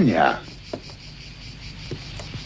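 Crickets chirping steadily in the background, with a short vocal sound from a person right at the start.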